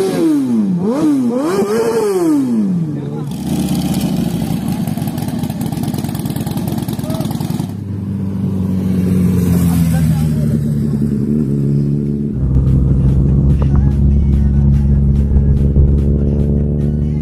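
Motorcycle engines: three quick revs rising and falling in pitch, then a steady run whose pitch slowly drops, and from about twelve seconds in a louder, deeper rumble of riding along.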